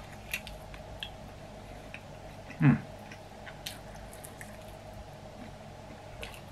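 A person chewing a mouthful of cold chicken wing, with scattered faint mouth clicks and smacks. A short hummed "hmm" comes about two and a half seconds in.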